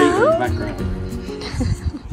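A domestic cat meowing once at the start, its pitch dipping and rising, over background music that fades away in the first second and a half.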